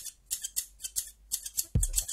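Hair-cutting scissors snipping in a quick run, about five snips a second. Near the end a deep electronic bass beat comes in.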